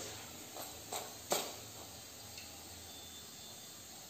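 Faint hiss of hot oil as fried mathri are lifted out of a kadai with a wire spider skimmer, with two short metal clicks about a second in, the second louder.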